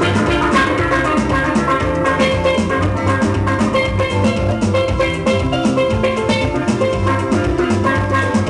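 A pair of chrome steel pans struck with mallets, playing a melody in quick ringing notes. A steady drum-and-bass accompaniment runs underneath.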